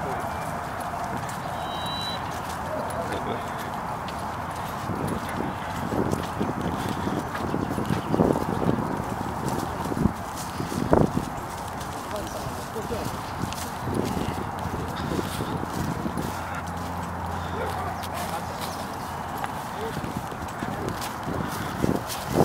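Footsteps of several people walking on a dirt and gravel path, an irregular patter of steps over a steady rustle, with people talking in the background.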